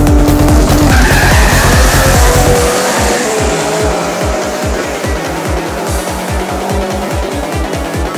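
VW Scirocco drag car with a Nissan RB26DETT twin-turbo straight-six launching hard with tyre squeal, the sound fading over the following seconds as it runs away down the strip. Electronic dance music with a steady beat plays throughout.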